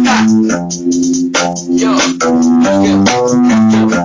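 Instrumental hip-hop beat with no vocals: a plucked-string melody stepping between notes over bass, with regular drum hits.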